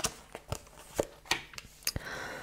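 A small deck of oracle cards being handled and shuffled: about six short, soft clicks and taps of card against card, irregularly spaced, ending as one card is set down on the table.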